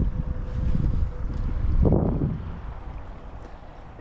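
Wind buffeting the microphone, a low rumble that swells about two seconds in and eases off toward the end.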